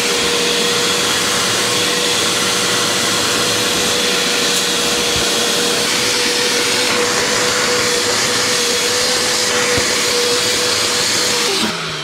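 Bissell upholstery cleaner's suction motor running steadily with a constant whine as its hand tool is worked over the car seats; the motor winds down near the end.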